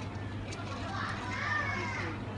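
A short high-pitched voice, bending up and down, about a second in, over a steady low hum.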